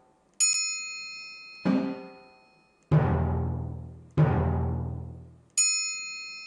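Timpani and triangle sounds from the Chrome Music Lab Rhythm web app, one note at a time as notes are placed on the grid. A ringing triangle ding comes first, then three separate drum strikes, the last two deep and long-ringing, and a second triangle ding near the end.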